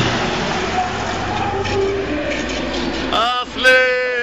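Steady vehicle and road noise as a tanker truck drives past close by, with a dense rushing haze throughout. About three seconds in, a person's voice calls out twice.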